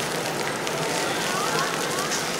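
Steady patter and hiss of water falling on pavement at a ground-jet plaza fountain, with children's voices faintly about a second in.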